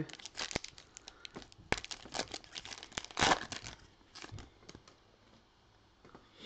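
A plastic trading-card pack wrapper being torn open and crinkled by hand: a run of sharp crackles and rips, loudest about three seconds in, thinning out after about four seconds.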